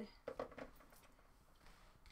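Near silence: room tone, with a few faint clicks in the first half second.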